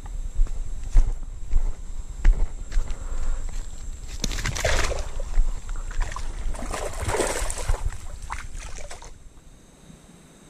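Water splashing and sloshing at the river's edge as a hooked fish is pulled in by hand to the bank, with two louder bursts of splashing about four and seven seconds in. Knocks and rumble from handling the camera run underneath.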